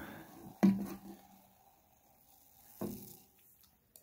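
A plastic soda bottle set down with a knock about half a second in and another knock near three seconds, over the faint hiss of freshly poured Pepsi Zero Sugar fizzing in a glass.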